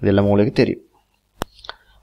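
A voice speaking briefly, then a pause broken by a single sharp click about one and a half seconds in.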